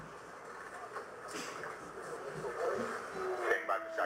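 Indistinct murmur of many voices in a crowded control room, with a clearer single voice near the end.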